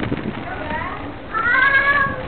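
A single high, drawn-out call that rises slightly and then holds for about half a second, starting about a second and a half in. It is the loudest sound, over faint voices in the background.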